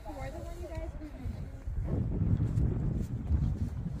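Wind buffeting the microphone, a low rumble that starts about halfway through, after a brief faint voice.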